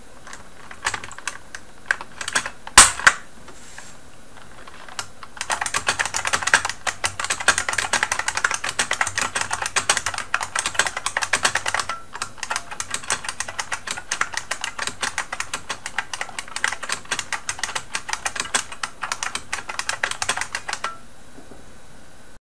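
IBM Model M13 buckling-spring keyboard keys clicking loudly under typing. A few scattered key clicks come first, one of them much louder, then a fast continuous run of typing starts about five seconds in. After a brief pause near the middle, a second, somewhat softer run is typed trying not to bottom out the keys, and it stops shortly before the end.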